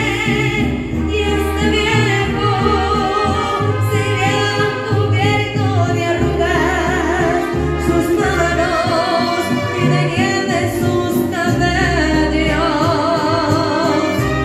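A woman singing a mariachi song with strong vibrato into a microphone, over instrumental accompaniment with a deep bass line that moves every second or two.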